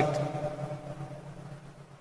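A pause between spoken phrases: the last word fades out in the room, leaving a quiet background with a faint, steady low hum.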